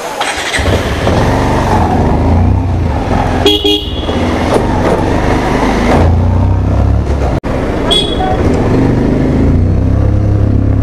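Motorcycle setting off and riding along, its engine mixed with heavy wind rumble on the microphone. A vehicle horn toots briefly about three and a half seconds in, and a short, higher beep sounds near eight seconds.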